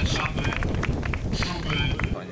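People talking over a loud low outdoor rumble with scattered short knocks, while horses walk past. The sound cuts off abruptly at the very end.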